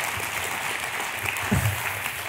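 Church congregation applauding, a steady patter of many hands clapping.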